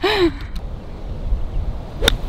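Wind buffeting the microphone with a steady low rumble, as when riding in an open golf cart, after a brief laugh at the very start.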